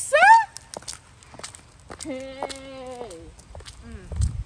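A woman's voice: a short, loud rising-and-falling whoop right at the start, then one long sung note held for about a second, from about two seconds in.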